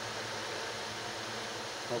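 A steady, even hiss of background noise, with no other sound standing out.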